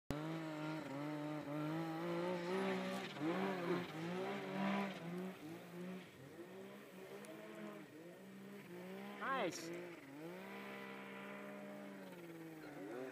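Snowmobile engines idling, their pitch wavering and shifting up and down, a little louder in the first few seconds; a man says a word near the end.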